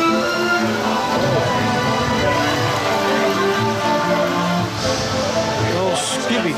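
Orchestral pirate-themed soundtrack music playing steadily over the ride's speakers.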